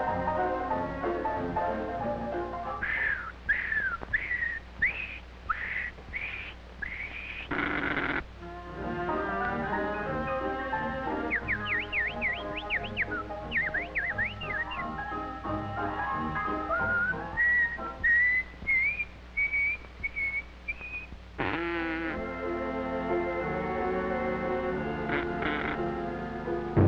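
Early-1930s cartoon orchestral score with a whistled bird voice over it. The whistle gives a run of falling swoops, then quick chirping trills, then a long rising whistle. A short noisy crash breaks in about eight seconds in and again after about twenty-one seconds.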